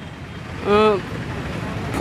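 Steady street noise with a low rumble of road traffic; partway through, a man's voice holds one short drawn-out syllable.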